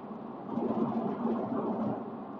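Steady vehicle rumble, as heard from inside a moving car, swelling louder for about a second and a half from about half a second in.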